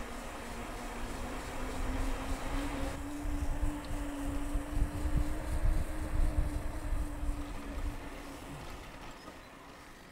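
Wind buffeting the microphone and road rumble from a moving bicycle, with a steady low hum that fades out near the end. The rumble grows louder in the middle and eases off toward the end.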